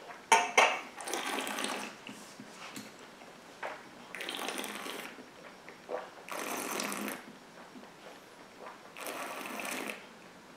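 A person's mouth sounds while tasting a sip of whisky: a short, sharp slurp just after the start, then four breathy bursts of air drawn or breathed through the whisky held in the mouth. Each burst lasts under a second, and they come a few seconds apart.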